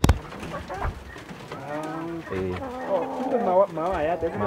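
Doves cooing, a run of low, wavering coos that begins about a second and a half in.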